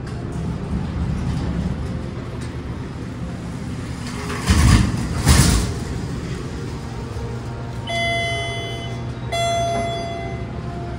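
MEI hydraulic elevator's submersible pump motor running with a steady low hum as the car rises, broken by two loud thumps about halfway through. Two chime tones sound near the end.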